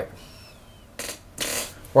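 A man's short puff of breath and then a longer breathy exhale, a scoff of exasperation, about a second in.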